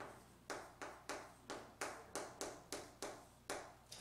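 Chalk on a chalkboard writing out a word: about ten sharp taps, roughly three a second, one at the start of each stroke.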